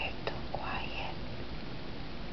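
A brief whispered or softly murmured sound from a person, preceded by a couple of faint clicks, over a steady hiss.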